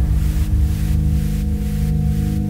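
Electronic future house track playing back at the end of its drop: a sustained synth chord rings on steadily over the fluttering low rumble of an impact sound's tail, with the beat stopped, as the breakdown begins.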